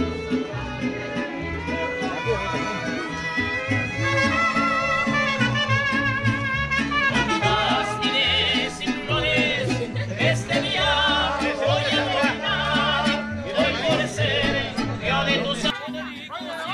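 Lively Latin American band music with singing over a steady bass line. The sound changes abruptly near the end.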